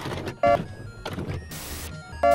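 VHS video cassette recorder sound effect: the tape mechanism whirs and clatters, with a short electronic beep about half a second in and a brief burst of hiss near the end.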